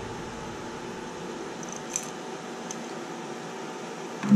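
Steady low background hiss of room tone, with a faint light click about two seconds in and another shortly after, from small carburetor parts being handled.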